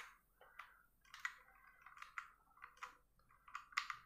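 Keys being pressed one at a time on a Rexus Legionare MX3.2 mechanical keyboard: about a dozen faint, irregular clicks.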